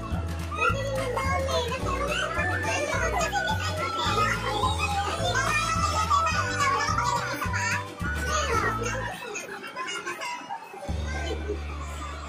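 Background music with a repeating bass beat and high, lively voices over it; the bass drops out for a moment about nine seconds in.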